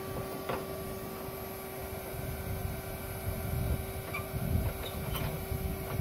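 Electric suction fan running steadily with a constant hum, pulling a vacuum through a wood gasifier reactor to draw air through it as the reactor heats up. An uneven low rumble runs underneath, with a couple of faint clicks.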